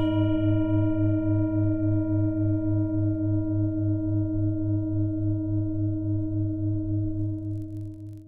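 A single struck, bell-like metal tone ringing on with several steady pitches over a low hum that wavers three or four times a second, fading slowly and dropping away near the end.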